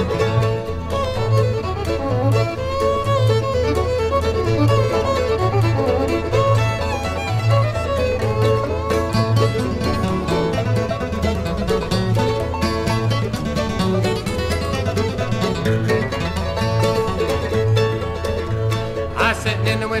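Bluegrass instrumental break from a 1962 LP recording: fiddle, banjo and guitar over a steady bass beat, with the singing voice coming back in at the very end.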